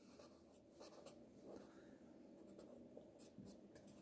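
Very faint scratching of a felt-tip marker pen writing letters on paper, in short irregular strokes.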